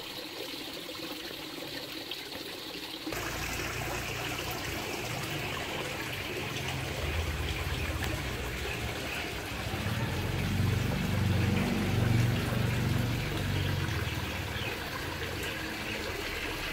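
Water trickling into a garden pond. About three seconds in, it gives way to a louder, steady outdoor background with a low rumble that swells around ten seconds in.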